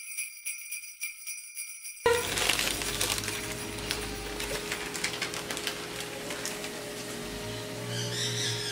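Jingle-bell music with a quick rhythmic shake for about two seconds, then a sudden cut to kitchen sounds: a thin plastic bag crinkling as a freshly pressed blue-corn tortilla is peeled off it, over a faint steady hum.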